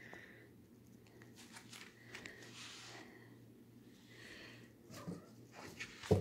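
Near silence: a faint steady low hum with scattered soft rustles and small clicks, a little louder near the end.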